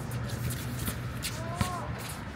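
Sneakers scuffing and shuffling on an outdoor sport-court surface as players run up the court, with one sharp knock about one and a half seconds in.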